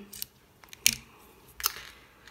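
Metal handpiece of an electric nail drill being handled while its bit is changed: three sharp clicks as the collar is twisted and the bit is seated, the loudest about a second in. The drill's motor is not running.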